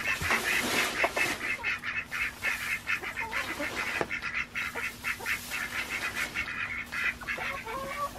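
Farm poultry calling in a steady run of short, rapid calls, with a few light clicks and rustles of dry hay being handled.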